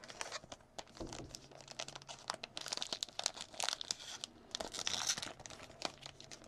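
The plastic wrapper of a Topps Chrome baseball card pack crinkling and tearing as it is opened by hand, a run of sharp crackles that grows denser about halfway through and again near the end.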